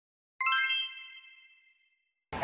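A single bright bell ding, an editing sound effect, struck about half a second in and ringing away over about a second.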